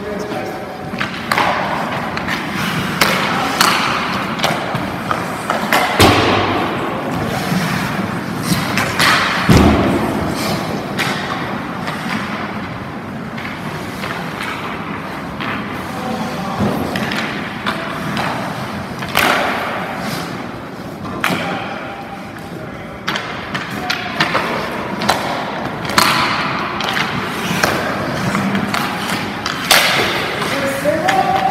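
Ice hockey goalie skates scraping and pushing on rink ice, broken by many sharp knocks and thuds of goalie gear on the ice, two of them heavy, about six and nine seconds in. The rink's hall gives it echo.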